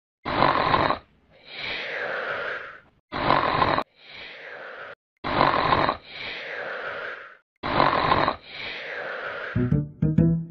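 A person snoring loudly: four snores about every two and a half seconds, each a harsh rasping inhale followed by a softer wheezing exhale. Flute music begins near the end.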